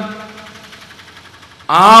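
A man speaking in Malayalam pauses between sentences; the echo of his voice fades away over about a second and a half. He starts speaking again near the end.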